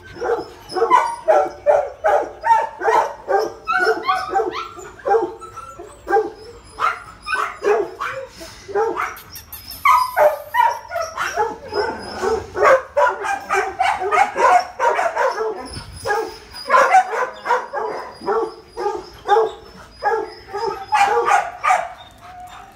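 Many shelter dogs barking without let-up: short, sharp barks overlapping several times a second.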